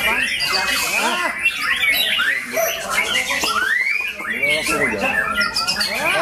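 White-rumped shama singing continuous, varied phrases of quick rising-and-falling whistled notes, with other birds singing over it at the same time.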